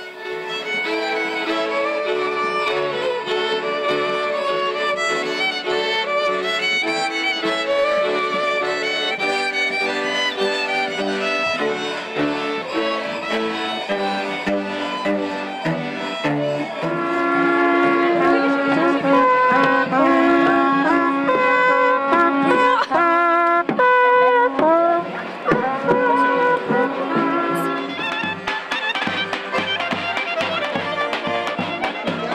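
Folk music from a string band led by fiddles, playing a lively tune; about two thirds of the way through it turns louder, with a new melody.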